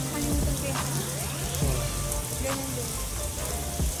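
Water spraying and splashing steadily from a water-park play structure, an even rain-like hiss with a low steady hum beneath.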